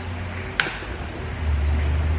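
A single sharp plastic click about half a second in as a retaining clip is pried off the back of a Jeep Gladiator grille by hand; the clip might be broken. A low rumble comes up after about a second and a half.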